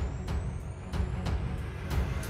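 Background music with a deep bass and light ticks about four a second, under a thin, high sweep that rises in pitch.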